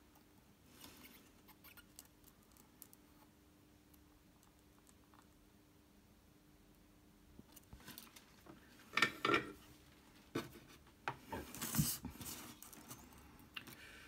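Near silence for the first half while the solder joint is made. Then, from about halfway, a scatter of light metallic clinks and knocks as the metal Telecaster control plate, with its pots and blade switch mounted, is picked up and handled.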